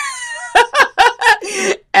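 A woman laughing: one drawn-out note, then a quick run of short bursts.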